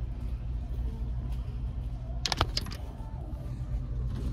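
Steady low background rumble of a large store, with a short cluster of sharp clicks a little past halfway.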